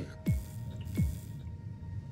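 Movie-trailer sound design: two deep hits whose pitch drops sharply, about three quarters of a second apart, over a faint music bed.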